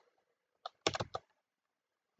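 Computer keyboard keystrokes: four quick, sharp clicks about a second in.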